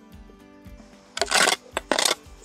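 Soft background music, then from about a second in two loud, harsh scrapes of a steel shovel cutting into the soil.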